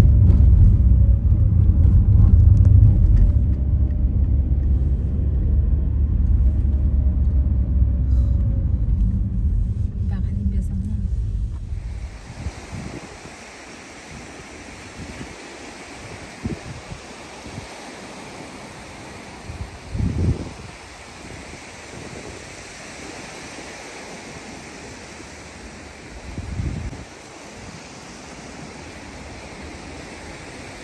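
Steady low road and engine rumble inside a moving car for about twelve seconds, then a sudden change to the even wash of sea surf on a beach. The surf carries two brief low thumps near the end.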